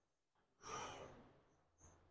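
A single soft exhale, like a sigh, about half a second long, a little after the start; the rest is near silence.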